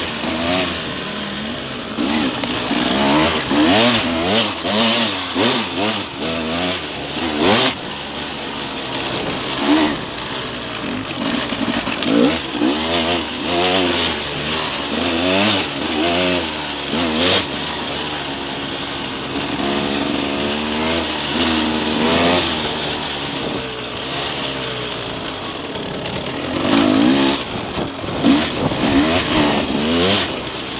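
Off-road motorcycle engine heard from on the bike, revving up and dropping back again and again as the throttle is worked along the trail. A few sharp knocks cut through it.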